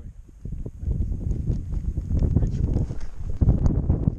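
Wind buffeting the microphone: an uneven low rumble that swells and drops, with scattered light knocks and rustles.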